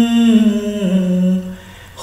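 A man's voice humming a held note that steps down in pitch about a second in, then fades away about half a second later.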